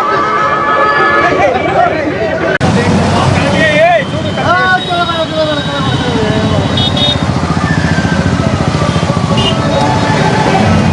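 Crowd chatter and shouting, then a sudden change about two and a half seconds in to the engines of many motorcycles riding together, with voices calling out over them.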